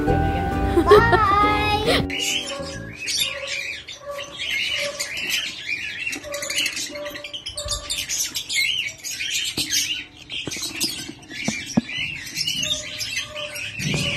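Music for about the first two seconds, then lovebirds chirping and squawking constantly, a dense run of quick, high, repeated calls.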